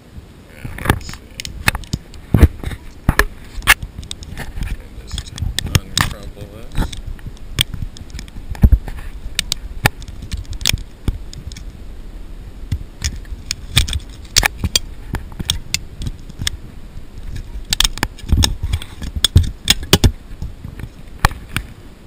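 A small sheet of Imron-painted aluminum can being uncrumpled and flattened out by hand close to the microphone: irregular sharp crinkling and crackling clicks.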